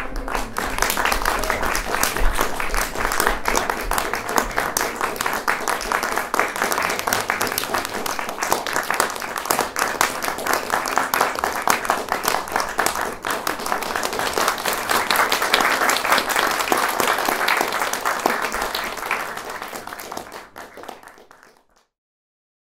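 Theatre audience applauding at the cast's curtain call, a steady crowd of hands clapping that fades out near the end.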